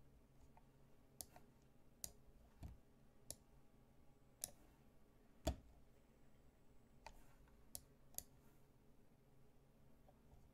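Faint, scattered clicks of a computer mouse, about nine at irregular intervals, with one louder knock about halfway through.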